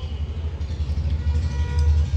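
A steady low rumble that grows louder toward the end.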